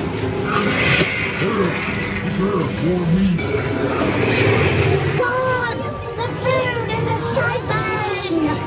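Haunted-house attraction soundtrack: eerie music under voices that cry out in long, wavering, gliding tones, strongest in the second half.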